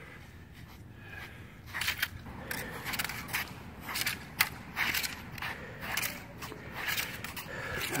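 A pair of Hung Gar double knives swung through a drill: an irregular run of sharp swishes and light clicks, about two a second, over a low steady rumble.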